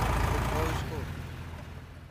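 Eicher 485 tractor's diesel engine running under heavy load, pulling a brick-laden trolley with its front end reared up, with a few short shouts over it. The engine drops away about a second in and the whole sound fades out.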